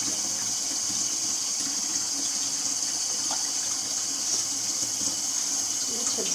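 Water running steadily into a stainless-steel kitchen sink.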